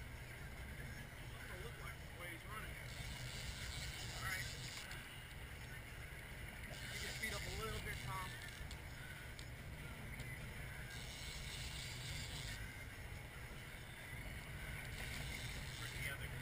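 Boat engine running with a steady low rumble under wind and water noise, and a higher hiss that swells and fades every few seconds. Faint voices come through now and then.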